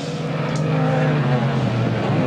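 Racing car engines running hard as the cars pass. The pitch drops slowly through the second half.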